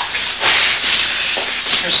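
A loud, steady rushing hiss that swells about half a second in and again near the end.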